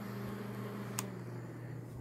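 Small rechargeable twin-blade USB desk fan running on its second speed setting, a steady low motor hum with the whoosh of its plastic blades. One short click about halfway through.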